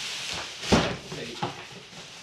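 A large cardboard shipping box being turned over and set down on a wooden table: a rustling scrape of cardboard, then a loud thump about three-quarters of a second in and a lighter knock about half a second later.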